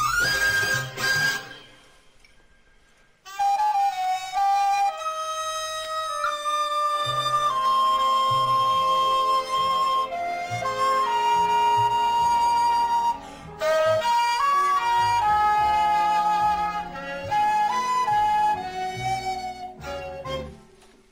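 Recorder playing a jazz melody, mixing long held notes with quick runs. It breaks off about two seconds in, comes back just after three seconds, and pauses briefly again about halfway through.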